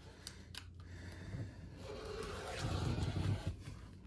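Rotary cutter blade rolling through folded fabric along a ruler onto a cutting mat: a soft scraping cut that builds about a second in and fades just before the end, with a couple of light clicks near the start.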